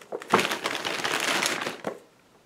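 Crinkling rustle, about a second and a half long, as books are handled and swapped.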